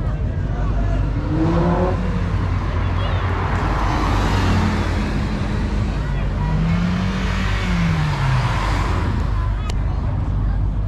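A car driving by on the street, its noise swelling about four seconds in, over a steady low rumble and scattered crowd voices.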